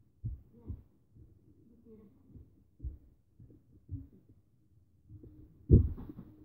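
Dull low thumps of feet and hands on the floor during gymnastics moves: a few spread out, the loudest near the end as she kicks up into a handstand.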